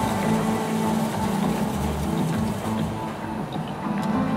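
Electric coffee grinder running steadily as it grinds beans, under background music.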